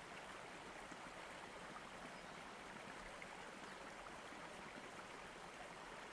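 Faint, steady running-water ambience.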